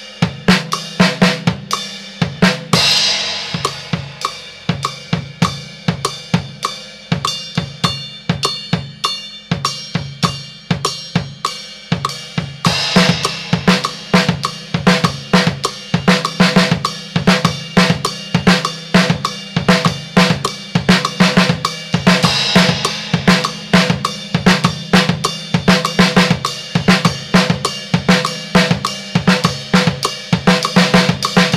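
Acoustic drum kit playing a salsa beat with sticks, bass drum, snare, hi-hat and cymbals. It starts slow at 60 BPM, and about twelve seconds in the groove steps up to a faster 100 BPM.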